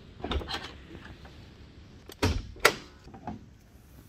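Chevrolet Corvette C6 door latch and opening mechanism: a cluster of clicks about half a second in, then two sharp clunks a little after two seconds and a lighter knock near three seconds.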